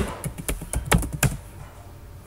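Computer keyboard keys clicking as a short word is typed and Enter is pressed. About half a dozen quick keystrokes stop about a second and a half in.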